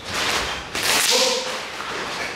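A group of karateka shouting in unison on a Sanchin kata strike, with a sharp swishing snap from the thrusting arms and uniforms just before the shout, about a second in.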